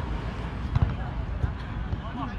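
A single dull thump about a second in, typical of a volleyball being struck in play, over a steady low rumble, with brief shouted calls from players.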